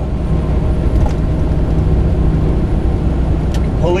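Steady low drone of a semi-truck's engine and road noise inside the cab at highway speed.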